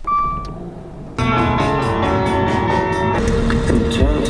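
A short electronic chime as a Dodge car's engine starts with a low rumble; about a second in, music cuts in and carries on.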